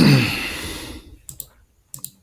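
A man clearing his throat: a loud rasp with a voiced note that falls in pitch and fades over about a second, followed by a couple of short computer-mouse clicks near the end.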